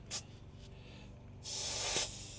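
Air hissing at a tyre valve as an inflator's pressure-gauge chuck is pushed onto it to read the tyre's pressure: a brief hiss just after the start, then a louder, longer hiss about one and a half seconds in.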